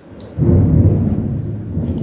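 Loud, low rumble of thunder that starts suddenly about half a second in and keeps going.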